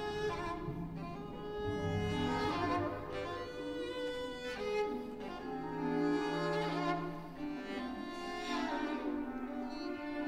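Solo violin playing long held notes in a violin concerto, with the orchestra's low strings sustaining deep notes beneath it that come and go.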